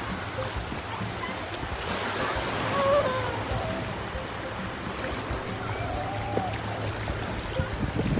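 Small waves washing in over the sand at the water's edge, a steady rushing wash with wind on the microphone.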